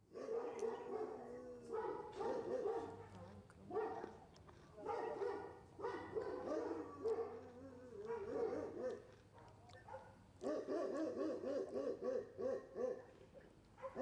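Faint whining animal cries, wavering in pitch, come in repeated bouts of a second or two. A quicker, quavering run comes a few seconds before the end.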